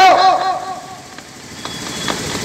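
A man's voice through a handheld microphone draws out the last word of a sentence for about half a second, then breaks off into a pause of steady background noise that grows louder toward the end.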